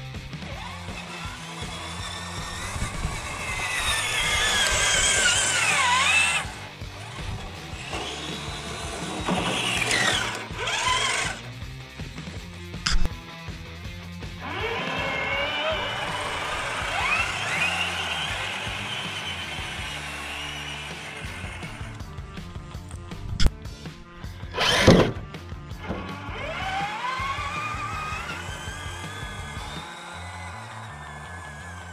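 Electric motors of scale RC crawler trucks whining, the pitch rising and falling with the throttle in several spells of a few seconds each, with a few sharp knocks, the loudest about 25 seconds in. Background music runs underneath.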